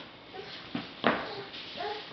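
A baby making a few short, small vocal sounds, with two sharp knocks about a second in, the second the loudest.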